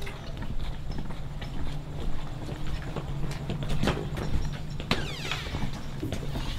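Footsteps on a concrete sidewalk, sharp steady steps over a low rumble from a handheld camera on the move. Near the end a door is pulled open, with a brief sweeping scrape.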